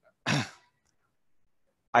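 A man clears his throat once, briefly, about a quarter second in.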